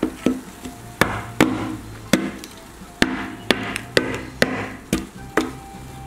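Wooden chopsticks striking a watermelon slice frozen rock-hard in dry ice, about a dozen sharp knocks as the frozen flesh breaks into chunks.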